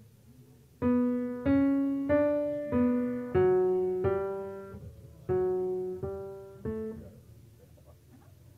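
Piano playing a short, slow melody of about eight notes, each struck and left to ring and fade, with a lower note held beneath the middle phrase.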